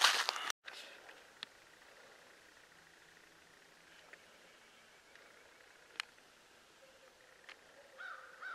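A man's voice trailing off, cut short about half a second in. Then faint outdoor ambience in woods, with a few isolated faint clicks.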